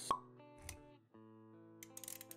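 Intro music with a sound effect: a single sharp pop right at the start, then held musical notes that drop out for a moment about a second in and come back.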